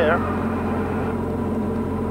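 Diamond DA40 light single-engine airplane's engine and propeller running steadily at climb power, a continuous even drone heard from inside the cabin.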